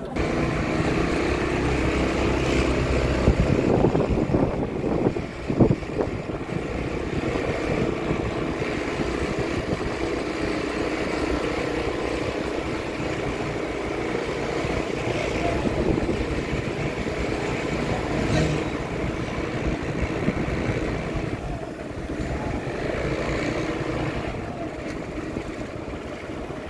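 Steady engine and road noise of a vehicle moving down a street, heard from on board, with a few sharp louder knocks about four to six seconds in.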